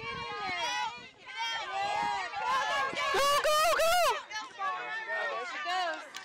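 High-pitched voices shouting and calling out, with the loudest, highest yelling about three to four seconds in.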